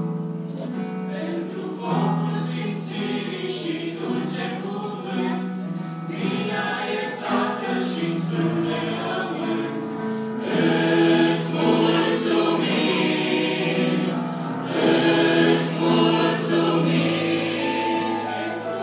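A mixed church choir of men and women singing together, led by a conductor, with long held notes; the singing grows louder about ten seconds in.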